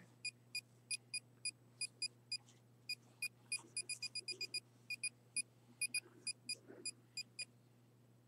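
A faint string of short, high electronic beeps at an uneven pace, about three to four a second, stopping shortly before the end.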